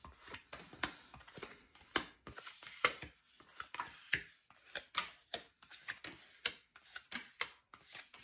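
Inkromancy Tarot deck shuffled by hand, the cards giving sharp, irregular taps a few times a second between softer sliding.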